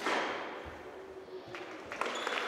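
Squash rally: a squash ball being struck and knocking off the court walls, with two sharp knocks close together in the second half over a low crowd hum.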